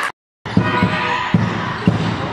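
Handball bouncing on a sports-hall floor: dull, echoing thumps, two of them about half a second apart in the second half, over the steady noise of the hall. The sound drops out completely for a moment just after the start.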